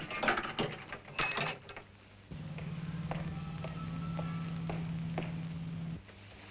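Clicks and rustles of handling. Then, from about two seconds in, a small mechanism runs with a steady low whirring buzz and fine rapid ticking, and it cuts off abruptly near the end.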